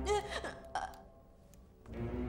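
A woman's short throaty vocal sound just after gulping water from a bowl, followed by a second brief one.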